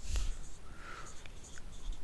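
Marker pen writing on a whiteboard: faint, irregular scratching strokes.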